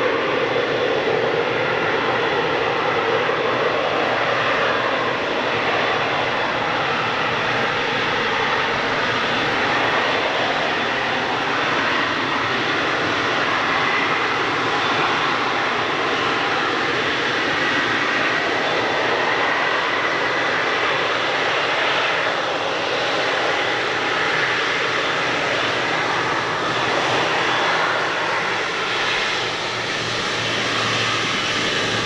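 Boeing 777-300ER's GE90-115B turbofan engines running at taxi power as the airliner rolls slowly past at close range: a steady jet rush with a faint high whine.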